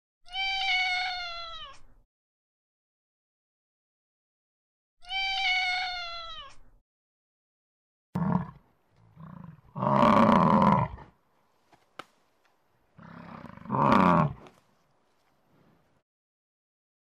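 A tabby cat meowing twice, each a long meow falling in pitch. Then Highland cattle lowing: a few short low calls building to two loud, rough moos near the end.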